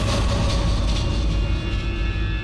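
A low, steady rumbling drone with a faint hiss and thin high tones above it: film soundtrack sound design.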